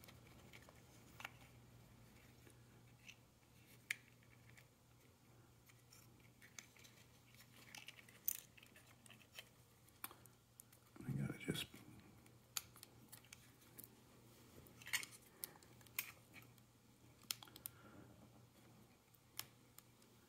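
Faint, scattered small clicks and taps of plastic parts and wires handled by hand as the landing-gear leg's plastic housing is worked off its circuit board, over a faint steady hum. A brief louder low sound comes about eleven seconds in.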